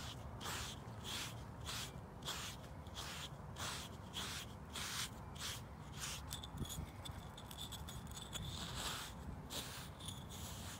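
Slick 'n Easy pumice-like grooming block scraping through a horse's shedding winter coat in quick, even strokes, two or three a second, pulling out loose hair.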